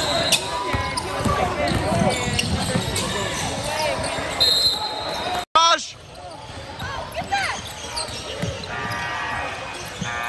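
Indoor basketball game: sneakers squeaking on a hardwood court and a ball bouncing, under a crowd of spectators' voices echoing in the gym. A short referee's whistle blast sounds about four and a half seconds in, and the sound cuts out for an instant just after.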